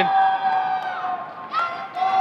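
Rink crowd cheering a hockey goal, with a steady held tone underneath that fades out a little past a second in and comes back near the end.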